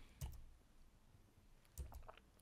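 Near silence broken by two faint clicks, one just after the start and one near the end.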